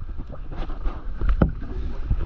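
Water sloshing and splashing against a stand-up paddleboard on the sea, over a steady low rumble of wind on the microphone, with a sharper splash about one and a half seconds in.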